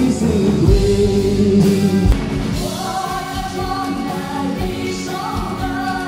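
Live band playing a Christian worship song: guitars, bass and drums under a held chord, then women's voices singing from about two and a half seconds in.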